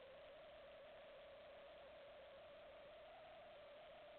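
Near silence: a trail camera's own faint hiss with a steady high whine that drifts slowly up in pitch.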